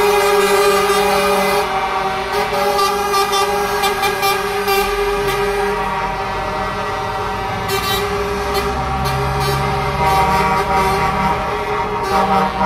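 Truck air horns sounding in long, overlapping held blasts from a convoy of lorries, over the diesel engines of the trucks driving by. The low engine rumble grows louder around the middle as a lorry passes close.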